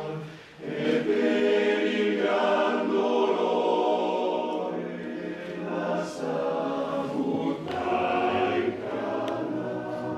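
Male-voice choir singing a cappella in harmony. After a brief break between phrases about half a second in, the voices come back louder and hold long chords.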